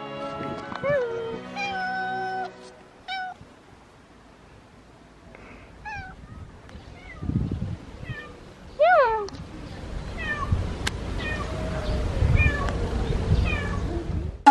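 A house cat meowing over and over in short calls, the loudest about nine seconds in, with background music underneath.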